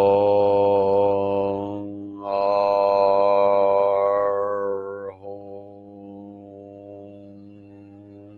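One low male voice chanting long, steady tones on a single pitch. A held note breaks off for a breath about two seconds in. A second note follows, and its vowel closes into a quieter, humming tone about five seconds in.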